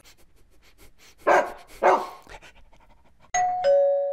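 A dog barks twice, then a two-note doorbell chime sounds, going from the higher note down to the lower, and rings on.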